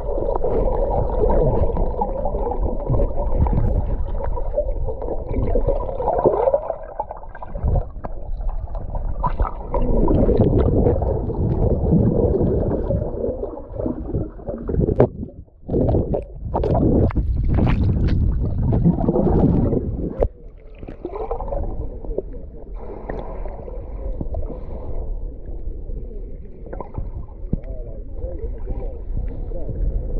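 Muffled underwater sound picked up by a submerged camera: water churning and gurgling around the housing, with a run of sharp clicks and knocks between about fifteen and twenty seconds in.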